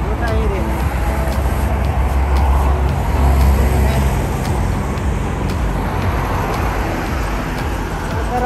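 Road traffic on a highway close by: a low rumble that swells as a vehicle passes, loudest between about two and four seconds in, then eases.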